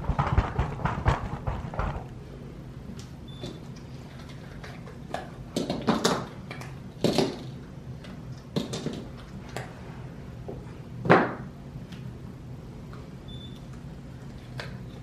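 Cured resin dominoes being worked out of a domino mould and set down on a table. It starts with a quick run of small clicks and knocks, followed by a few separate knocks, the loudest about eleven seconds in.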